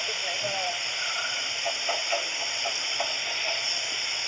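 A steady hiss with a few faint, short voice fragments under it.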